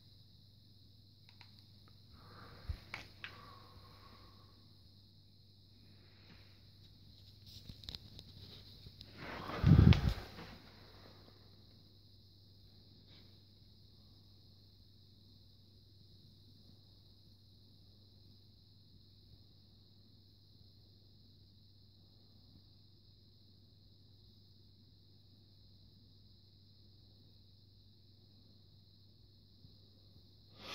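Quiet room tone with a steady low hum and a faint high hiss. A few soft noises come in the first ten seconds, then one louder, low, blowing thud about ten seconds in.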